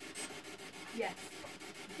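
A steady, faint, scratchy rubbing noise, with a quiet voice saying "yes" about a second in.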